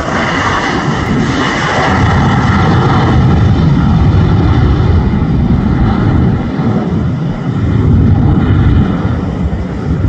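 Jet engines of an American Airlines airliner at takeoff thrust as it lifts off and climbs away: a loud, rough rumble, with a higher whine that is strongest in the first few seconds and then fades.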